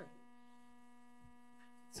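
Near silence with a steady electrical hum, a low buzz with several higher overtones, from the room's microphone and recording system.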